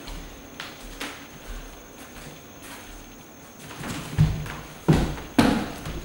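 Feet thudding on a hardwood floor during kick practice: a few soft steps, then three heavy thumps close together in the last two seconds.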